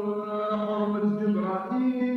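A man's voice singing a slow, drawn-out melodic line in Algerian chaabi style, holding each note for about half a second and stepping from note to note.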